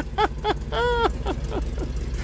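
A car engine running at a low, steady idle as a car rolls slowly past, with a person laughing over it.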